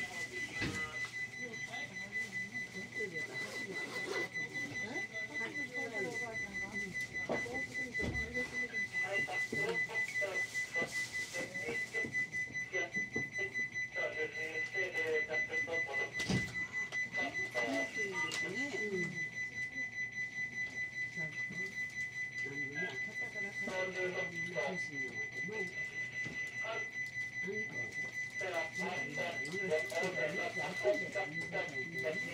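A steady high-pitched electronic tone sounds continuously, with muffled voices talking underneath and a single sharp click about 16 seconds in.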